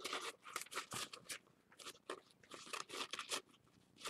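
A stiff piece of fabric being crumpled and scrunched in the hands to soften it: a run of irregular crackling crunches that dies away shortly before the end.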